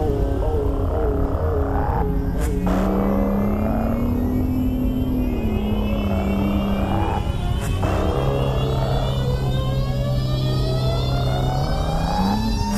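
BMW E36's engine driving hard, with brief breaks about two and a half and seven and a half seconds in, and revs climbing steadily through the last few seconds, under a steady low rumble. A hip-hop music track plays over it.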